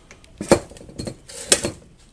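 A few sharp clinks and knocks as a civil defense radiation meter and its metal probe are handled and set down on a workbench. The loudest come about half a second in and about a second and a half in.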